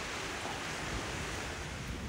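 Steady wind noise, an even rushing with a low rumble from wind on the microphone.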